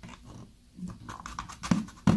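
Hand wire strippers clicking and scraping as the insulation is stripped off a thermostat wire, with two brief low voice-like sounds in between.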